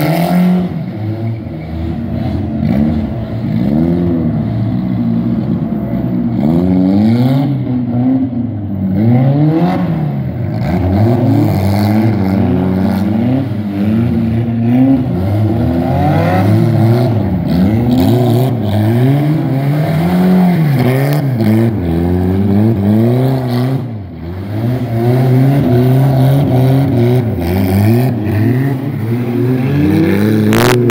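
Car engines revving up and down over and over as modified sedans spin circles on wet pavement, the engine note rising and falling every second or two.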